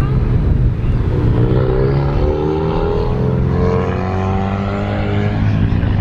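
A car engine running as the car drives off, its pitch climbing gently for a few seconds and then levelling off before fading, over a steady low rumble.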